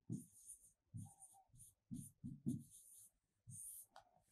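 Faint pen strokes on an interactive display screen as words are written: about eight short strokes, each a soft tap with a light scratch.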